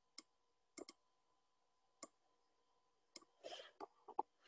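Faint computer mouse clicks: about six short clicks, irregularly spaced, with a brief soft rustle near the end.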